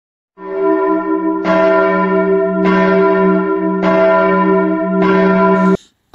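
A church bell struck five times, about a second apart, each stroke ringing on into the next. The ringing cuts off suddenly near the end.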